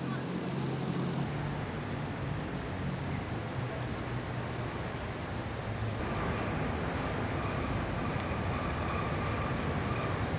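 Steady street traffic noise with a low rumble. A thin, steady high whine joins about six seconds in.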